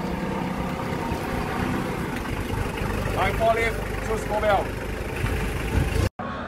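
Mitsubishi forklift's engine running steadily as the truck drives across the yard, with a short spoken line over it about halfway through.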